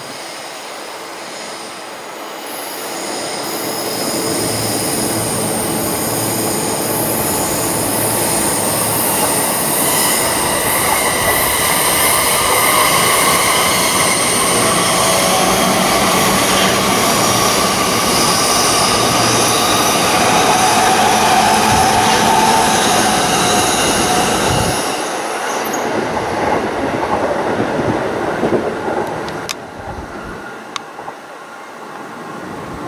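Electric commuter train passing close by on the tracks below: a dense running rumble of wheels on rail with several high, steady tones over it. It builds about three seconds in and falls away sharply near the end.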